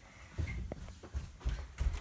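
A few dull low thumps and knocks, about four or five in a little over a second, with a faint click or two among them.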